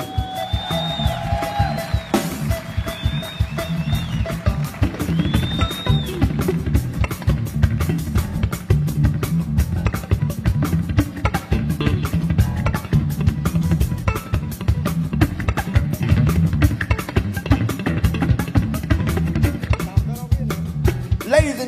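Electric guitar, a Fender Stratocaster, played in fast slap-style thumping over a drum kit, with dense percussive strokes over a steady low groove.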